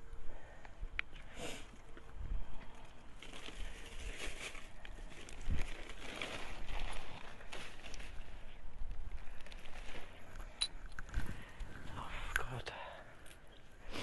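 A cat eating from a plastic bowl, with irregular rustling, crinkling and soft clicks of handling close by.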